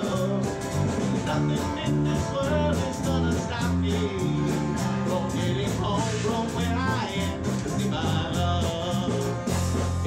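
Live band playing an instrumental break of a song: strummed acoustic guitars keep a steady rhythm over stepping bass notes, with a lead melody above that bends in pitch.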